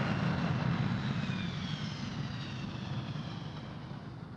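A steady rushing noise like an aircraft passing, with faint high whines slowly falling in pitch, gradually dying away.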